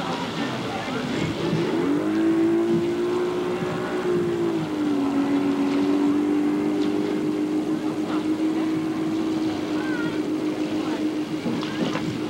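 Motorboat engine running at a steady pitch while towing a water-skier, rising in pitch about two seconds in and dropping slightly a couple of seconds later before holding steady.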